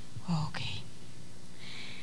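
Soft whispered or murmured voice close to a handheld microphone: a short low syllable with a small click in the first second, then a brief breathy hiss near the end, over a faint steady hum from the sound system.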